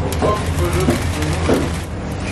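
Hot oil in a deep fryer bubbling and crackling, with quick irregular pops over a steady low kitchen hum.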